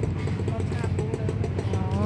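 An engine idling nearby: a steady low hum, with faint voices in the background.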